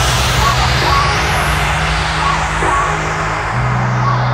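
Breakbeat electronic dance music in a breakdown: the drums have dropped out, leaving held synth bass notes, short high synth blips and a hissing noise wash that slowly fades.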